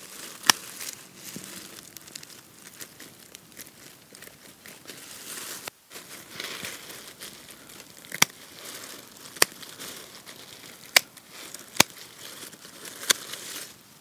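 Secateurs snipping through dead strawberry foliage, about half a dozen sharp snips, most of them in the second half, over the rustle and crackle of dry leaves being gathered and pulled away.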